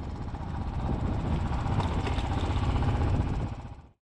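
Royal Enfield Bullet's single-cylinder engine running as the bike is ridden, growing louder over the first second, then fading out just before the end.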